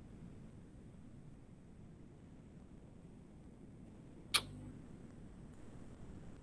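Quiet room tone with a faint steady hiss, broken once about four seconds in by a single short, sharp click.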